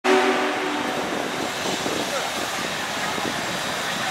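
Chime steam whistle of Union Pacific 4014 'Big Boy' sounding a chord for about a second, then giving way to a steady wash of train noise and crowd chatter.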